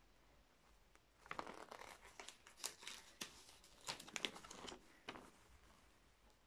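A folded paper lyrics sheet being unfolded by hand: faint paper crinkling and crackling, starting about a second in and dying away near the end.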